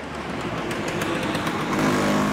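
Street traffic: a motor vehicle running on the road, growing steadily louder as it approaches.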